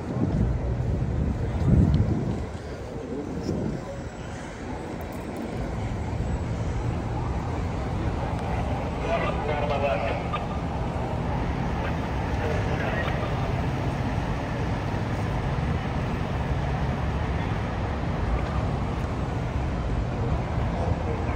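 Steady low rumble of traffic and engines on the expressway below, with indistinct voices around the start and again about halfway through.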